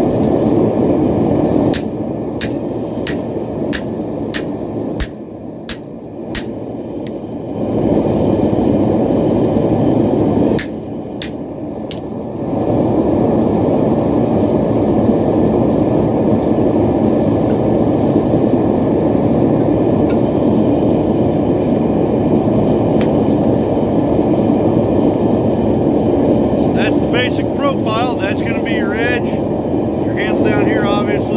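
A mallet tapping a hot knife blank on a steel anvil to flatten and true it: a quick run of about a dozen light strikes, then a short second run a few seconds later. A steady low rushing noise runs under the strikes.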